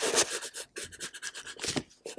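Pencil scratching on paper in quick repeated strokes as lines of a drawing are put in.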